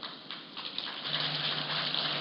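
Crackling rustle of paper pages being handled at a lectern, picked up close by the podium microphone, with a faint steady low hum joining about a second in.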